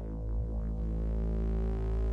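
Electric guitar run through a Eurorack modular rack as a guitar synth: one sustained, deep synth-like note with filter modulation sweeping its tone.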